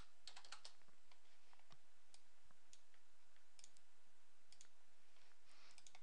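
Faint computer keyboard keystrokes and mouse clicks, irregular sharp clicks scattered through, over a steady low hiss of room tone.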